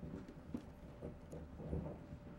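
A few soft, irregular knocks and thumps, about four in two seconds, as the applause dies away.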